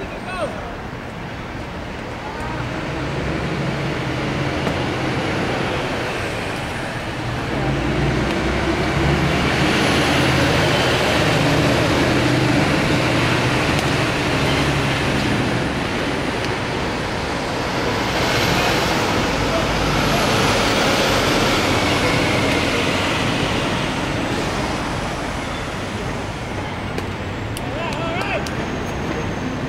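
Motor vehicle traffic noise with a steady low rumble. It swells and fades twice, the way passing vehicles do.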